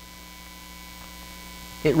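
Steady electrical hum with a few faint, unchanging tones, heard through the microphone and sound system while no one speaks. A man's voice comes back in near the end.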